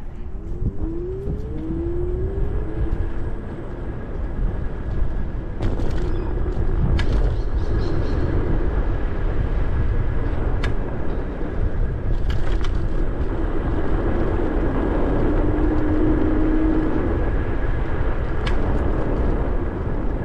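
Ninebot Max G30P electric kick scooter riding along a paved path: a steady rumble of wind and wheels, with a thin motor whine that rises in the first couple of seconds and holds steady later on. There are a few sharp clicks along the way.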